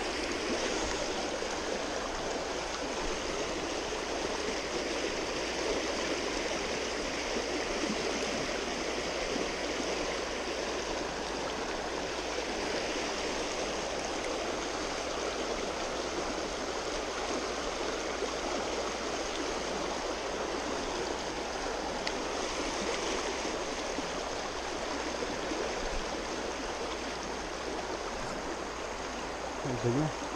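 A stream's water flowing steadily, an even rush of water noise that does not change.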